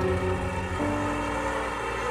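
Soft background music of long held notes, changing chord about a second in, over a steady low rumble.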